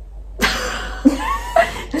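A young woman bursting into breathy, stifled laughter behind her hand, starting about half a second in.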